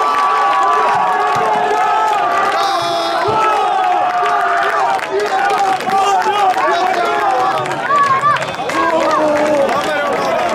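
Many overlapping voices shouting and cheering together in celebration of a goal, a continuous din of raised, drawn-out yells.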